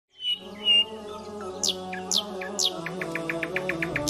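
Channel intro music: a held, steady chord with bird-like chirps over it. Three high falling whistles come about half a second apart, followed by a run of short high ticks at about seven a second.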